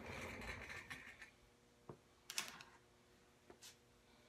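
Faint rustling as a person settles into a gaming chair's leather seat. A few small clicks and creaks come from the chair as he shifts, the loudest a short cluster a little past halfway.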